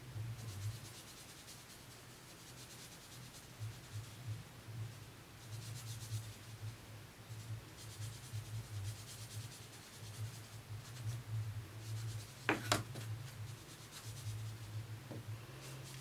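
Soft pastel being rubbed onto paper with a sponge-tipped applicator: faint, repeated scratchy strokes, with one sharp tap near the end.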